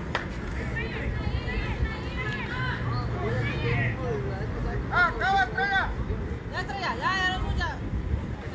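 High-pitched shouts and chanted cheers from young players' voices on a baseball field, with a run of three evenly spaced calls about five seconds in and more shouting soon after. A steady low rumble runs underneath.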